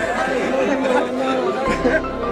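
Crowd chatter: many people talking at once, overlapping, with no single voice standing out.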